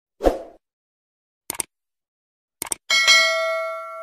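Subscribe-button animation sound effects: a short soft sound, then two quick double mouse clicks, then a bright notification-bell ding that rings on and fades out.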